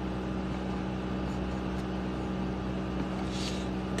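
A steady low mechanical hum with a few even tones, unchanging throughout, and a brief soft hiss near the end.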